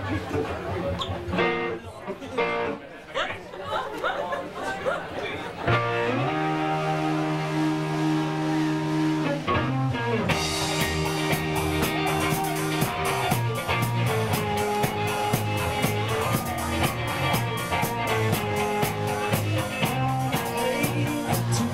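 Crowd chatter and a few scattered electric guitar notes, then about six seconds in an electric guitar holds a steady chord, and about ten seconds in the full live rock band comes in with drums and cymbals on a steady beat, playing the song's instrumental intro.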